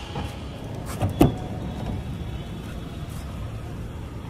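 A car running with a steady low rumble, broken about a second in by two sharp clicks a moment apart, the second the louder.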